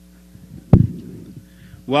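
Table microphone handling noise: one loud, low thump about three quarters of a second in, with rustling around it, over a steady electrical hum in the sound system.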